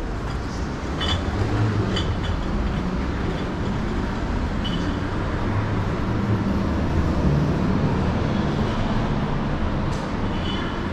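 Steady low rumble of a train running on the tracks at an S-Bahn station, with a few short high squeaks about one, two and five seconds in.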